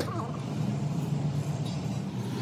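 Heavy diesel engine idling steadily, an even low hum.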